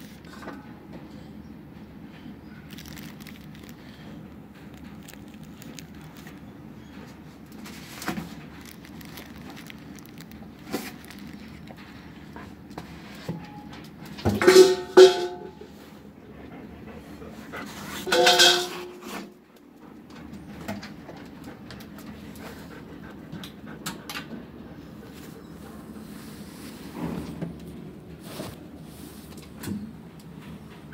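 Dog sounds in a shelter kennel over a steady low background hum, with faint handling clicks. About halfway through come a few short barks: two close together, then one more a few seconds later.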